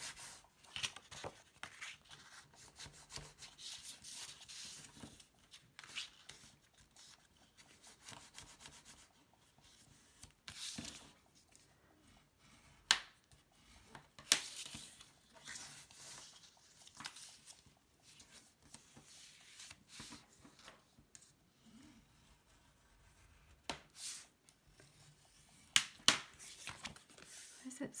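Scored black cardstock being folded along its score lines and burnished flat: soft rubbing and paper rustling, with a few sharp clicks, two of them close together near the end.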